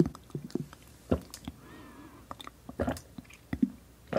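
Close-up mouth sounds of sipping from the curved spout of a glass 'bird glass' drinking vessel full of colored jelly balls: short wet clicks and gulps every half second or so, with a brief wavering whistle-like tone about halfway through.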